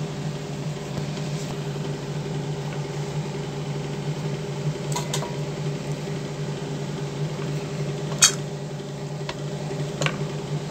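A steady low mechanical hum, with a few light clicks; the sharpest comes about eight seconds in.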